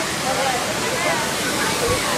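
Steady rushing noise of falling water, with faint background voices in the first second or so.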